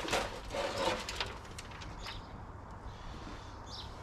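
Soil and a blueberry bush's root ball rustling and scraping as they are worked out of a black plastic tub into a wheelbarrow. The noise is loudest in the first second, then quieter rustling.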